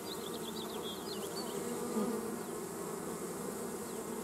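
Many honeybees buzzing around a hive entrance: a steady, even hum of wings.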